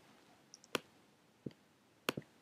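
A few faint computer mouse clicks: two quick light ones about half a second in, a sharper one right after, and one more about a second and a half in.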